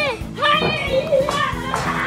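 A child's high voice calling out and exclaiming, over background music with steady held notes.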